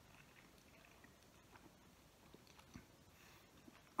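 Near silence with faint chewing of a soft, warm sub sandwich, a few small mouth clicks.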